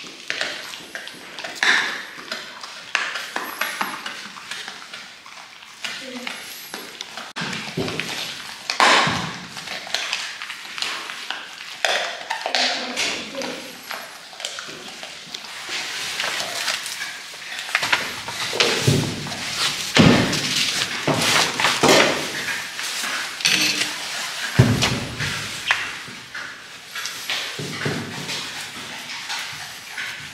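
Voices talking, with frequent short knocks, thunks and light clinks of knives and utensils on a cutting board while wild boar meat is being cut up.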